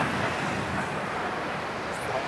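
Steady city street traffic noise: an even rush of passing vehicles with no distinct events.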